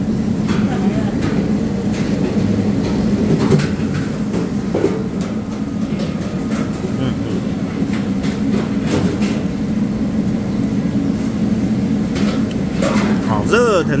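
Steady low rumble of background noise at a roadside eatery, with a few light clicks of tableware as food is eaten and faint voices.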